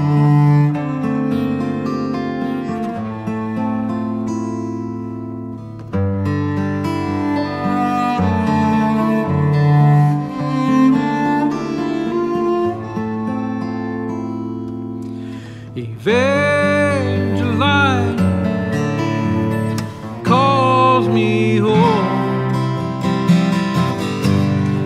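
Instrumental introduction of a chamber-folk song: bowed cello playing sustained low notes over acoustic guitar, with a new phrase starting about six seconds in. Around sixteen seconds in, a higher melody line with sliding pitch comes in.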